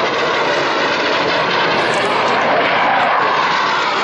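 A USAF Thunderbirds F-16 Fighting Falcon's turbofan jet engine (a Pratt & Whitney F100) as the fighter makes a low pass and pulls up; the jet noise is loud and steady.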